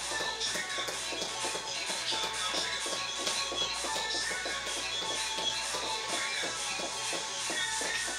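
Background workout music with a steady beat, over quick, repeated footfalls of high knees running in place on a tiled floor.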